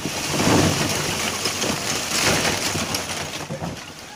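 Lumps of water-quenched charcoal sliding and clattering out of a tipped metal drum onto a plastic tarp: a dense rattle of many pieces, loudest in the first three seconds, with two surges.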